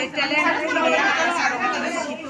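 Speech only: a woman talking steadily.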